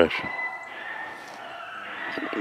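Rabbit hounds baying in the distance as they run a rabbit in the woods: a faint, thin, high call held for about a second.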